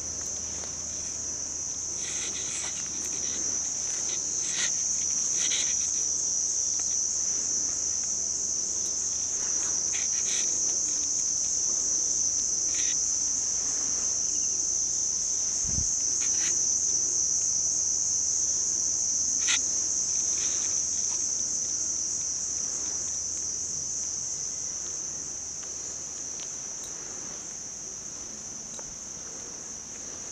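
A chorus of insects making a steady high-pitched buzz that grows louder through the middle and fades toward the end, with a few faint clicks.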